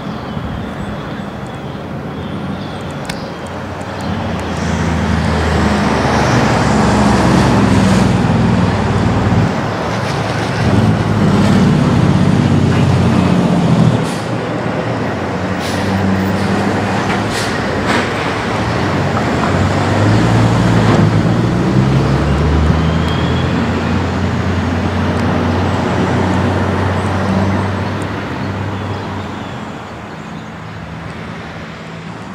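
Road traffic: the engines of heavy vehicles passing, growing louder about four seconds in, dipping briefly about fourteen seconds in, then swelling again and easing off near the end.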